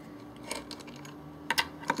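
A few light clicks and taps from handling, in two small clusters, over a faint steady hum.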